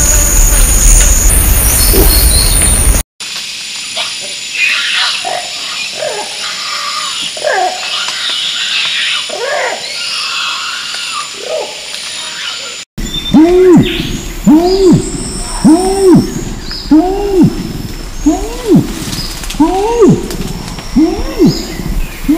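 Three orangutan recordings in turn. First come loud grunts for about three seconds. Then a young orangutan's distress screams, high calls sliding up and down in pitch, run for about ten seconds, and from about two-thirds of the way in an adult male orangutan's long call follows: a series of deep pulses, each rising and falling in pitch, about one a second.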